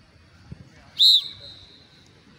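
A single short, loud whistle blast about a second in, trailing off at the same high pitch: the coach's signal in a slow-fast interval run, calling the runners to switch to fast running.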